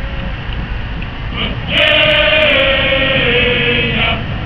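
A long held musical note starts a little before halfway and sinks slightly in pitch as it goes, over a steady low outdoor rumble.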